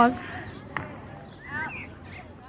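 Speech only: a woman's voice finishing a word at the start and a short spoken fragment near the end, with a single brief click in between.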